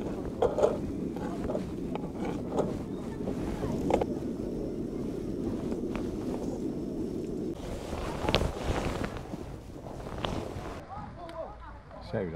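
Kitchen knife cutting sausage and garlic on a bamboo cutting board: a few sharp taps of the blade on the wood, over a steady low background rush.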